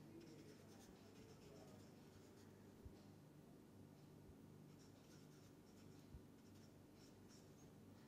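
Faint squeaky scratching of a felt-tip marker writing on paper, the strokes coming thicker in the second half, with a couple of soft low thumps.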